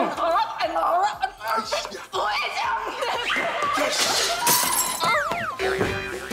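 Drama soundtrack: background music under laughter and wordless vocal sounds. A sharp crash comes about four and a half seconds in, and a sliding tone falls in pitch just after it.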